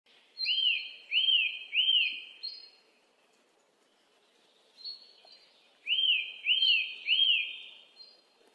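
Bird-like chirping: three quick rising-and-falling whistled notes, then the same group of three again after a pause of about three seconds.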